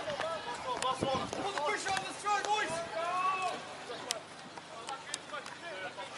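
Voices talking in the background, fainter than close speech, with a few sharp clicks in the second half.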